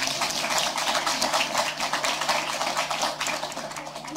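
Audience applauding, a dense patter of many hands clapping that tapers off near the end.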